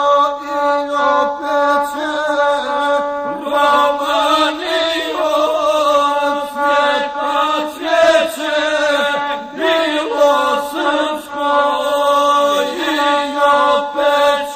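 Gusle, the single-string bowed folk fiddle, accompanying a voice that chants in the traditional guslar epic style. It runs as held, nasal tones with wavering, ornamented pitch.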